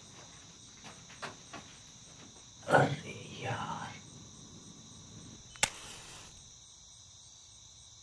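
Crickets trilling steadily, a high-pitched, even night chorus. Over it come a few soft knocks, a louder brief sound about three seconds in, and a single sharp click a little before six seconds.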